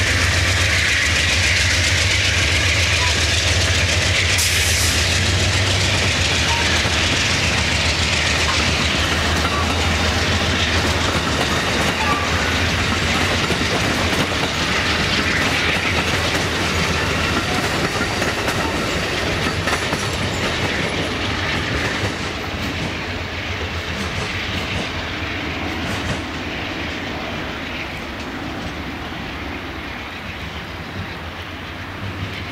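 Amtrak Superliner bilevel passenger cars rolling past, their steel wheels clacking over the rail joints. The sound fades steadily as the end of the train goes by.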